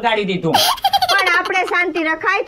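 Speech with laughter: a high-pitched laugh breaks in about half a second in and runs on into lively talk.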